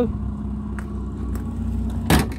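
A 1997 Ford Escort van's small overhead-valve engine idling steadily.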